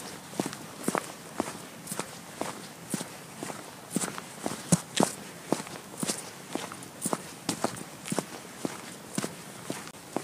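Footsteps of laced boots walking at a steady pace on a concrete pavement, about two steps a second.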